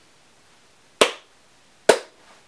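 Two sharp knocks, a little under a second apart, each dying away quickly.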